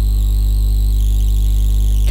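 A loud, steady hum that holds one unchanging pitch with many higher overtones; it does not vary at all and runs on under the narration.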